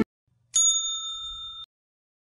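A single bright bell-like ding, an intro sound effect, about half a second in; it rings on and fades for about a second, then cuts off suddenly.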